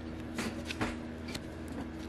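Trading cards being handled by hand: a few light card clicks and slides as a card is picked up from the spread, over a faint steady hum.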